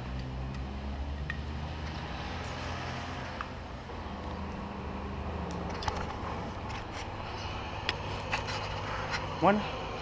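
A low steady rumble with a faint hum, and from about halfway through, scattered clicks and rubbing from an action camera being handled as it is taken off a bicycle handlebar and turned round.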